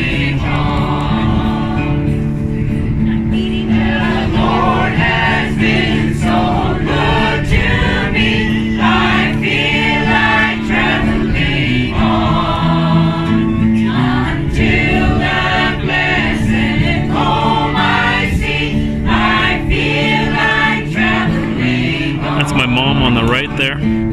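Several voices singing a song together, a woman's voice leading into a microphone, with guitar accompaniment played through a small amplifier.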